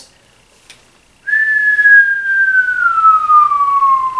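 A person whistling one long, slowly falling note, starting about a second in: the cartoon sound effect for something falling.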